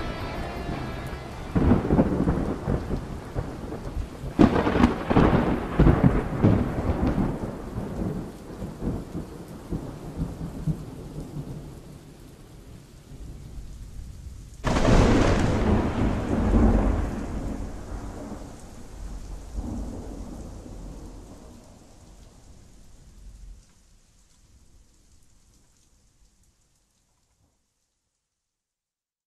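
Thunderstorm: several sudden thunderclaps, each trailing off in a long low rumble, the loudest about fifteen seconds in, over a steady hiss of rain. The storm fades away near the end.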